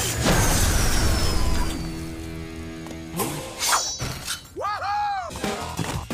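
Cartoon fight sound effects over a music score: a loud crash right at the start with a thin falling whistle after it, two sharp impacts about three and a half seconds in, and a short rising-and-falling tone near the end.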